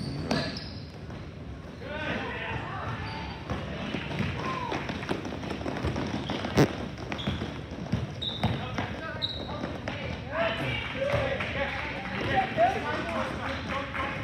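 A basketball bouncing on a gym floor during play, under the voices of players and spectators. There are a few short high squeaks and one sharp knock about six and a half seconds in.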